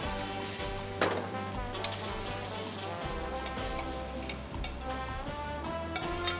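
Pasta sizzling in a very hot frying pan on a high-output restaurant gas stove as it is lifted out with tongs, with two sharp metal clicks of the tongs about one and two seconds in. Background music plays underneath.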